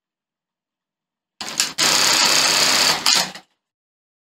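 Industrial bartack sewing machine running one bartack cycle, starting about a second and a half in: it begins slowly, then switches to a faster speed for a little over a second of steady stitching, and stops with a short burst of clatter.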